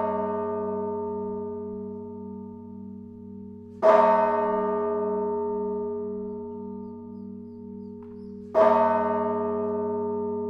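A large bell struck in slow single strokes, about four and a half seconds apart. Each stroke rings on and fades slowly, over a low pulsing hum.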